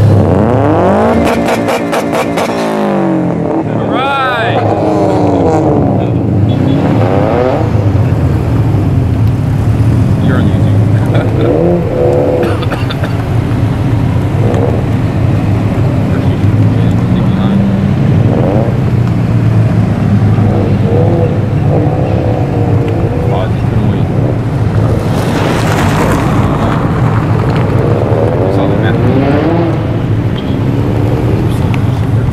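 Cars, mostly Subaru Imprezas and WRXs, pulling out one after another, engines revving and exhaust notes rising and falling as each goes past. The loudest pass comes about 25 seconds in.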